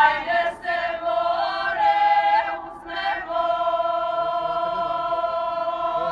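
Choir singing: several voices move through a phrase, then hold one long chord through the second half.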